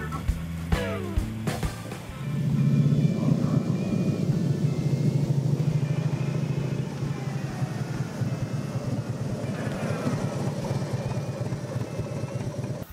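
Harley-Davidson touring motorcycle's V-twin engine running, loud from about two seconds in, with a rapid even pulse of firing strokes.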